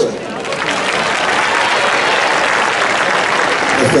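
Large audience applauding, building up quickly and then holding steady.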